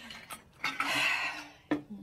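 Glassware and utensils clinking as a cocktail is mixed: a light clink, then a short burst of clattering noise in the middle.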